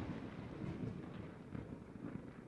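Thunder rumbling low, slowly fading away.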